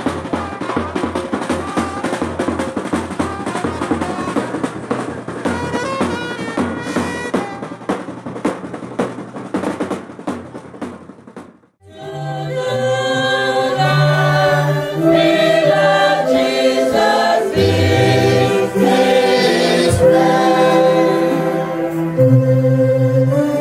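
A drum band beats a fast, dense rhythm under singing. About twelve seconds in there is a sudden cut to a slow hymn sung by a congregation, with long held notes.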